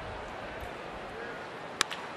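Steady murmur of a ballpark crowd, then near the end a single sharp crack of a wooden bat hitting a pitched baseball, sending it on the ground.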